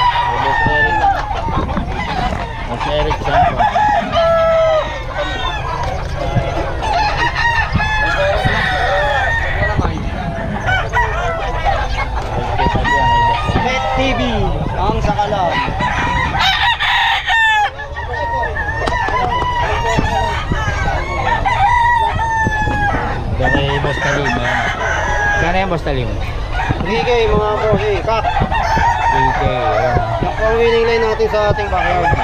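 Many caged gamecocks crowing over one another, with clucking in between, one crow after another without a break.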